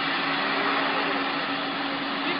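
Steady mechanical rushing noise with a constant low hum running under it, unchanging throughout.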